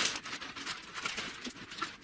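Light clicks, taps and rustles of handling: coiled power and network cables being lifted from a cardboard shipping box and set down. The sharpest click comes right at the start, with lighter taps after.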